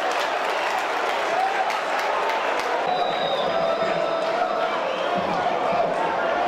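Live sound of a football match: voices shouting on and around the pitch over a steady crowd noise, with a few short sharp knocks.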